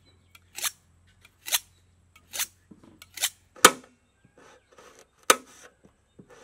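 A kitchen knife slicing through raw carrot and striking a steel table top, a crisp chop about once a second, with two louder strikes in the second half.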